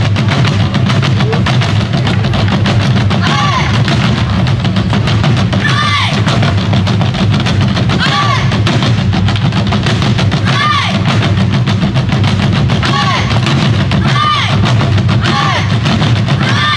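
An ensemble of Korean buk barrel drums on stands played in dense, rapid strikes over loud backing music with a steady low pulse. A high swooping sound recurs every couple of seconds.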